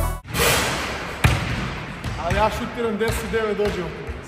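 Basketball bouncing on a wooden gym floor, with one sharp bounce about a second in and lighter knocks later. A man's voice talks in the second half.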